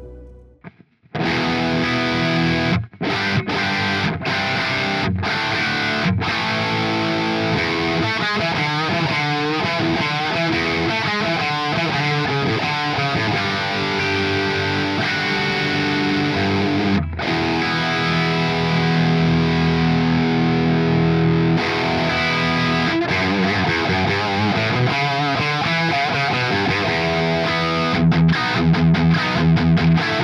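Gibson Les Paul electric guitar played through a heavily distorted amp tone, starting about a second in. It plays sustained notes and wavering, bent lines, with a few brief breaks, and ends in short rhythmic stabs.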